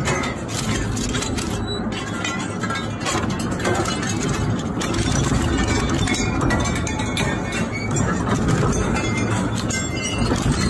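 Twin-shaft shredder's hooked steel cutters chewing up yellow plastic spoked wheels: a dense, unbroken run of cracking and crunching over the machine's steady low rumble.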